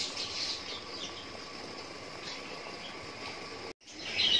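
Jaggery-and-water syrup at a rolling boil in an open steel pot, a steady bubbling hiss. It cuts out briefly just before the end.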